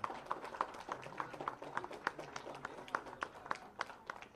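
Scattered hand claps from a small group of people, uneven and sparse rather than a full round of applause.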